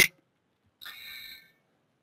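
A single faint, high-pitched whistle-like tone lasting about half a second, about a second in, with near silence around it.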